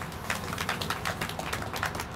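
Light applause from a small crowd: a dense, uneven scatter of individual hand claps.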